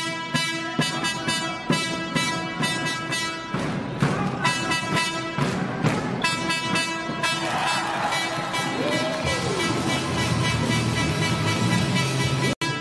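Background music with a steady beat and sustained pitched tones.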